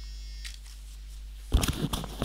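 Steady low electrical mains hum picked up by a computer microphone, with a short burst of rustling noise about one and a half seconds in.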